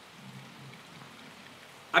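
Quiet room tone: a faint, steady hiss with a low murmur under it. A man's voice starts just at the end.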